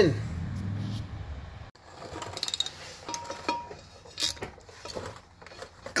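Socket wrench clicking, with light metal clinks, as the driveshaft yoke bolts are worked. It comes in short irregular bursts from about two seconds in.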